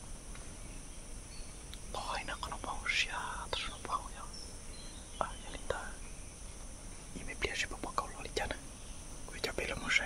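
A man whispering close to the microphone in two stretches of short phrases, with a pause between them.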